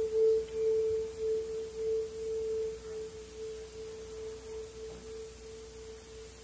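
One sustained, nearly pure electric guitar note, plucked just before and left ringing, slowly fading. Typical of a guitarist tuning between songs.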